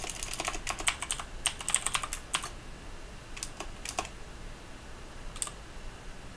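Typing on a computer keyboard: a quick run of keystrokes for the first two and a half seconds or so, then a few scattered single keystrokes.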